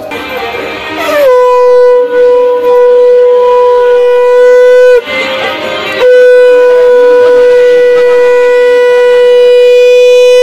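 Conch shell (shankha) blown in long, steady, loud notes. One note rises into pitch about a second in and holds until about five seconds. A second note starts about six seconds in and holds to the end, with a rougher, noisier sound between the notes.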